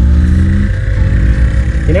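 Small motorcycle engine running while riding in traffic, its note breaking briefly just under a second in and then carrying on, under heavy wind rumble on the microphone.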